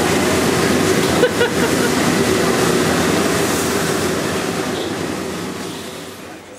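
Steady roar of a commercial wok kitchen: high-pressure gas wok burners and the extractor hood. It fades away over the last couple of seconds.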